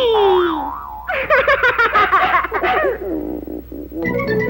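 Cartoon sound effects: a single falling pitch glide, then about two seconds of quick, warbling, chirping pitched sounds that fade out near the end.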